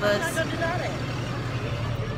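Faint chatter of a group of people outdoors over a steady low rumble of an idling motor vehicle engine.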